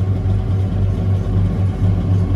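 Tractor engine running steadily: a low drone with a regular throb.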